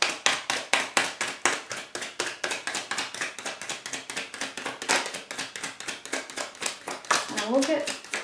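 Tarot deck being shuffled by hand: a fast, even run of card slaps, about seven a second, that stops shortly before the end.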